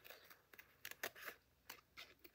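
Scissors snipping through sealed waterslide decal paper, trimming its edge: a few faint, short snips in the second half.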